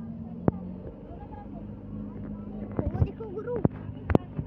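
Engine of a moving safari vehicle running steadily, with several sharp knocks and rattles from the body as it drives over rough ground.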